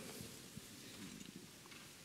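A pause in a large hall with only faint room tone: a low hum and a few small, soft rustles.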